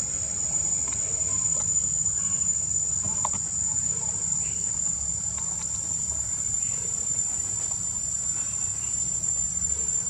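A steady, high-pitched insect drone that holds one even pitch without a break, over a low rumble.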